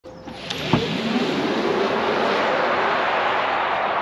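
Hyundai Ioniq 5 electric car accelerating away, a steady rush of tyre and wind noise that builds over the first second. A faint whine runs under the rush, and a short knock comes near the start.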